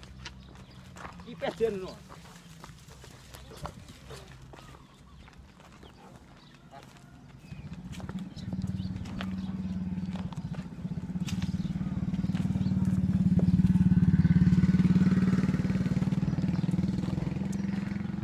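A small motorcycle engine approaching, its low hum building from about halfway through, loudest a few seconds before the end, then starting to fade.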